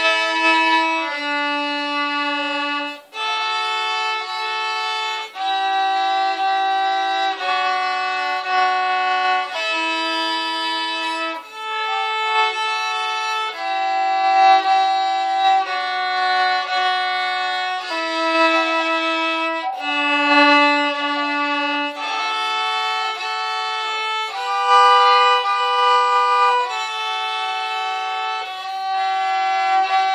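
Two violins played together as a duet, bowing a slow tune in long held notes that change about every second or two.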